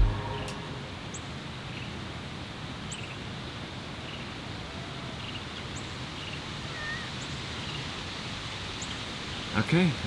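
Quiet outdoor ambience: a steady low hiss of open air with faint, brief high chirps every second or two. A man's voice comes in at the very end.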